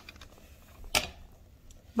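Quiet room with a single sharp click or knock about a second in and a few faint ticks, typical of handling the recording device or setting something on a table.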